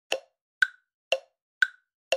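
Short percussive sound effect over an intro title card: four brief clicks, about two a second, alternating between a lower and a higher pitch.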